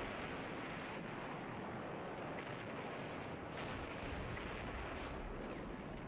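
Naval artillery bombardment: a continuous, dense din of shellfire and shell bursts, with a few sharper cracks between the middle and near the end.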